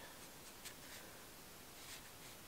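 Soft strokes of a watercolour brush across paper, two faint swishes, one a little over half a second in and one near the end, over quiet room tone.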